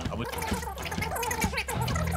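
Indistinct men's voices over a steady bed of background music.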